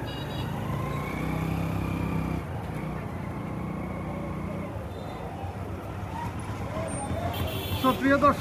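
Street traffic: a car and motorcycles passing close by, their engines running over a steady hum of the street, with a stronger low engine note about a second in.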